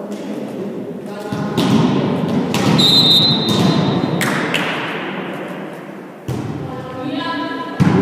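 Volleyball being struck in an echoing sports hall: several sharp thuds a second or more apart, among players' and spectators' shouts, with a steady high whistle blast of about a second around three seconds in, typical of a referee's whistle.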